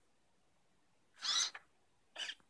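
Hobby servo motor in the robot's neck whining briefly as it turns the 3D-printed head, a short high-pitched whine a little over a second in.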